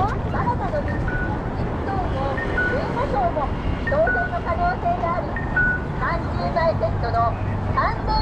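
Busy city pedestrian crossing: passers-by talking over a steady low traffic rumble. Short high electronic tones repeat every second or so.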